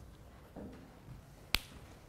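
A single sharp click about one and a half seconds in, over quiet room tone.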